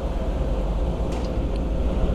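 Motorcycle engine idling steadily through an exhaust with no baffle (dB killer) fitted, giving a low, even rumble.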